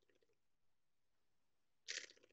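Fujifilm X-T4's new mechanical focal-plane shutter firing in continuous high at 15 frames a second, a very quiet, rapid patter of clicks. A faint trail of clicks dies away in the first half-second, then near silence, then a new burst begins near the end.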